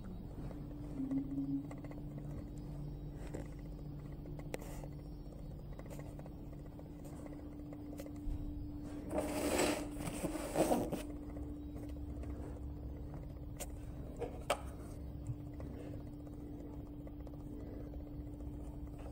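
A steady machine hum over a low rumble. About nine seconds in comes a loud rustle of blue paper being handled close to the microphone, and later a few light clicks.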